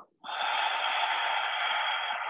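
A long, audible exhale out through the mouth: one steady breathy rush that begins a moment in and holds level. It is the exhale phase of bunny breath, a yoga breathing exercise of three short sniffs in through the nose followed by one audible breath out of the mouth.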